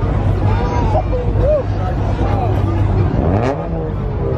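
Car engines running in a low, steady rumble under shouting voices from a crowd. About three seconds in, one engine revs up.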